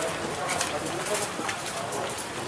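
Faint, indistinct voices of people nearby, with a couple of short light knocks.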